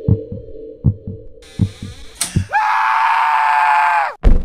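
Heartbeat sound effect thumping quickly over a low drone, then, about two and a half seconds in, a loud man's scream that holds one slightly falling pitch to the end.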